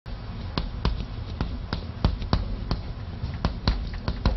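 Chalk tapping and knocking on a blackboard as Chinese characters are written stroke by stroke: an irregular run of sharp taps, about two or three a second.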